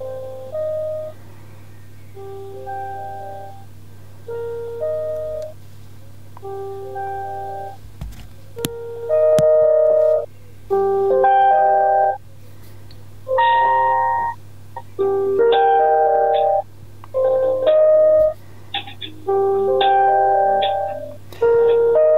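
Piano-like hold music heard through a Nokia 105 4G's earpiece on a call, muffled and chopped into short phrases with silent gaps between them: the phone's noise reduction is cutting out the quieter passages. The music becomes louder from about nine seconds in, over a steady low hum.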